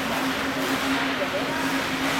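Ice hockey rink ambience: a steady low hum under an even wash of noise, with scattered, indistinct spectator voices.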